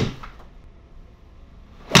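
Golf iron shots in an indoor simulator bay: a sharp crack of club on ball into the hitting screen dies away at the start, then another strike lands right at the end, with a short echo of the small room after each.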